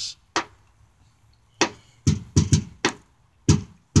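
Hand slaps drumming on the sheet-metal front fender of a red 1994 Chevy as a beat, about eight hits in a loose rhythm: one early, a gap of over a second, then a quick run of hits and a few more near the end.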